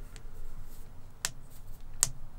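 A few short, sharp clicks of computer input at a desk, a faint one just after the start, a clearer one just past a second in and the loudest at the very end, over a low room hum.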